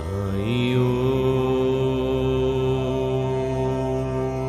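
Devotional chanting: a low voice slides up into one long held note about half a second in, over a steady musical background.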